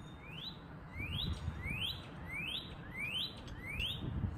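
Male northern cardinal singing a run of rising whistled notes, six in a row, about one every two-thirds of a second.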